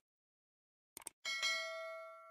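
Subscribe-button animation sound effects: a short mouse click about a second in, then a single notification-bell ding that rings on and slowly fades.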